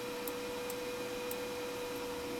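Quiet room tone: a steady electrical hum on one constant mid-pitched note over faint hiss, with a few faint, short clicks.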